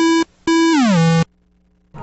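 Electronic synthesizer music: a short note, then a longer note that slides down in pitch and cuts off about a second and a quarter in.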